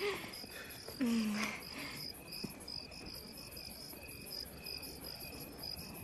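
Crickets chirping steadily in the background, a faint high chirp repeating a couple of times a second over a thin steady trill.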